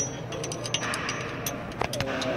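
Light metallic clicks and taps as a metal clutch gauge tool is probed between the throwout bearing and the clutch brake of an Eaton Fuller clutch, checking the gap after an adjustment. There is a sharp click at the start, then a scatter of smaller ticks.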